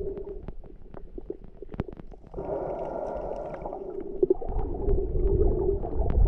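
Underwater sound picked up by a camera in a waterproof housing: a muffled low rumble and hiss with many scattered sharp clicks. A rushing noise comes in suddenly a little past two seconds and grows louder towards the end.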